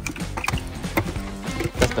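Cardboard shoe box and the paper inside it being handled as sneakers are taken out, a few sharp clicks and rustles, over steady background music.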